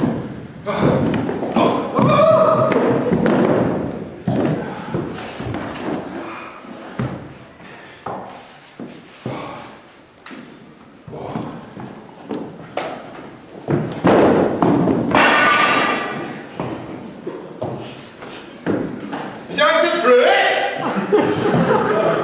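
Indistinct voices in a large hall, with scattered thumps and knocks throughout.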